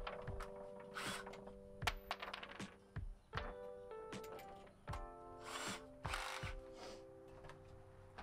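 Background music holding sustained chords, over a few short bursts of a cordless drill, about half a second each, and sharp knocks.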